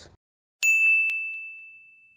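A high, bell-like ding sound effect: it is struck suddenly a little over half a second in, hit again about half a second later, and rings on one high tone as it slowly fades away.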